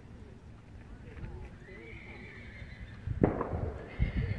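A horse whinnying: one long high call starting about one and a half seconds in. Just after three seconds a loud rushing burst of noise follows.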